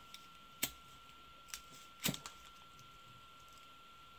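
A disposable lighter being struck, giving a few sharp clicks in the first half, over a faint steady high tone.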